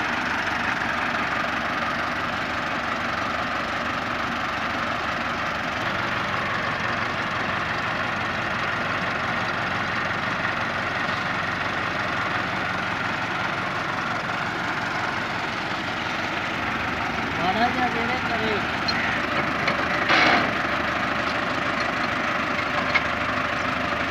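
Massey Ferguson 385 tractor's four-cylinder diesel engine idling steadily, with a short knock about twenty seconds in.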